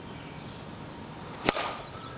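A bat striking a pitched softball: one sharp crack about one and a half seconds in, followed by a short ringing ping.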